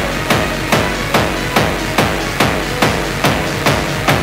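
Techno music in a stripped-back passage: a sharp percussive hit repeating evenly a little over twice a second, over a low bass.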